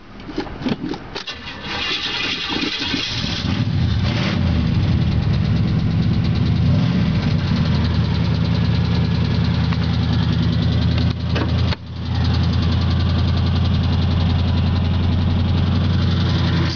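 Oldsmobile 350 V8 with a glasspack muffler being started, heard from inside the car's cabin. It cranks unevenly and catches about two seconds in, then settles into a steady idle with one brief dip near the twelve-second mark.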